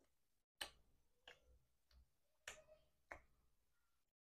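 Close-miked chewing of a mouthful of sausage: quiet wet mouth clicks and smacks, about five sharp ones spaced half a second to a second apart.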